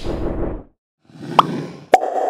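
Logo-animation sound effects: the tail of a drum-and-whoosh sting dies away in the first moments, then after a brief silence a short rising blip sounds, and a sharp click comes near the end.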